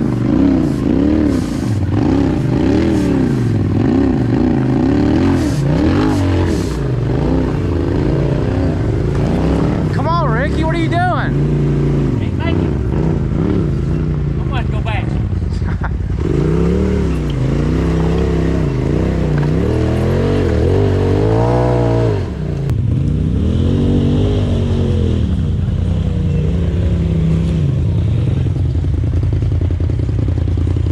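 Polaris RZR side-by-side engines revving up and down over and over as they crawl over rocky ledges. A brief high-pitched wavering sound comes about ten seconds in.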